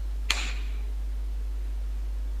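A steady low hum with a single short click about a third of a second in; otherwise no distinct sound.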